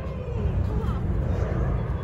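Steady low rumble of wind buffeting a phone microphone.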